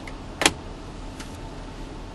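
A single sharp click about half a second in, with a fainter tick a little later, over a steady low background noise inside a car cabin.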